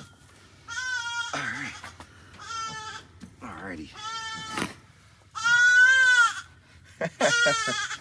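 Baby goats bleating: about five high-pitched cries spaced a second or so apart, the longest and loudest one rising and then falling in pitch about two-thirds of the way through. The kids are crying to each other on being separated.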